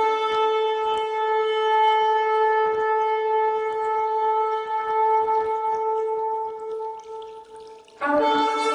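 Shofar (ram's horn) sounding one long, steady blast on a single pitch, weakening in its last second.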